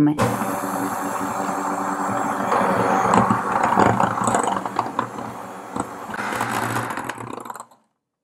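Electric hand mixer running steadily, its two wire beaters churning a thick cream mixture in a glass bowl, with a few sharp clicks of the beaters against the glass. The motor cuts off near the end.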